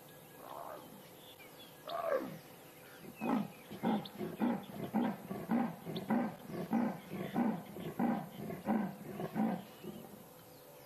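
A female leopard giving her sawing territorial call, the rasp: a falling moan about two seconds in, then about a dozen rasping strokes at roughly two a second. She is calling for cubs she cannot locate.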